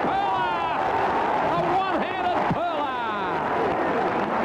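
A male radio commentator shouting excitedly in high-pitched, wavering calls over steady crowd noise.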